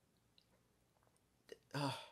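Near silence in a small room, broken by a few faint mouth clicks and lip smacks from a man pausing between sentences, then a spoken "uh" near the end.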